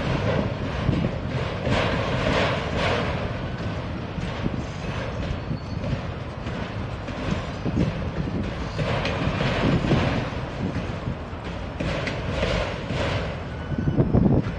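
Freight train of autorack cars rolling past at low speed: a steady rumble of steel wheels on rail with repeated irregular clacks and rattles from the cars.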